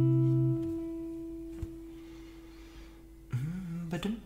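Acoustic guitar's last strummed chord ringing and slowly fading away. Near the end, a brief low voice-like sound that slides up and down in pitch.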